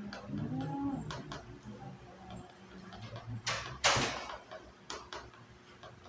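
Light clicks of plastic chess pieces being set down on the board, with a brief low murmured voice near the start. Two short, loud rushing noises about three and a half and four seconds in are the loudest sounds.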